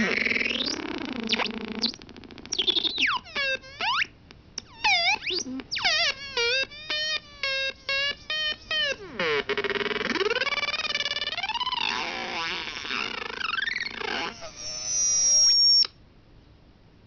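Optical synthesizer with LFO and low-pass filter, its pitch set by hands shading its light sensors: a buzzy tone swooping up and down, chopped into quick pulses about three a second for a few seconds in the middle. It ends on a high held note that cuts off suddenly.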